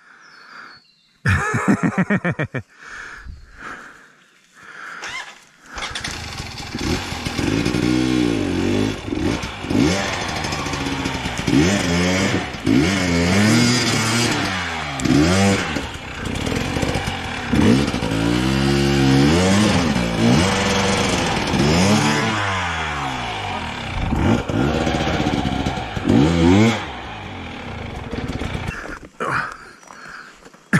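Dirt bike engine revving up and down over and over as it climbs a loose dirt trail, the pitch rising and falling every second or two. It starts about six seconds in and drops away near the end.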